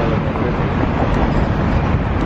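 Steady downtown street noise: a continuous traffic rumble.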